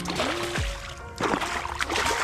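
A hooked snook splashing at the water's surface, with a few sharp splashes in the second half, under background music.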